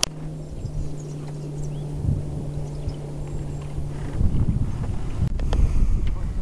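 Wind buffeting the camera microphone outdoors on the water, turning into a louder low rumble from about four seconds in. A steady low hum runs underneath for the first four seconds, and a sharp click comes at the very start.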